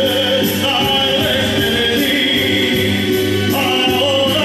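A man singing into a microphone over a karaoke backing track with a steady beat, holding long notes.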